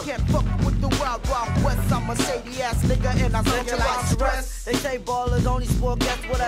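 Hip hop track: a rapped vocal over a beat with a heavy bass line.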